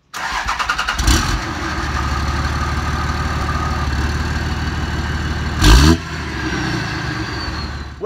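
2003 Dodge Ram's 5.9-litre Cummins turbo-diesel inline-six cranking for about a second, catching and settling into a steady diesel idle. About five and a half seconds in it is blipped once, briefly and loudly, then drops back to idle with a faint falling whistle.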